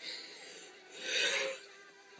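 Rubbing and rustling close to the microphone, most likely a hand or fabric brushing against the phone: a short scrape at the start, then a louder one about a second in that lasts about half a second.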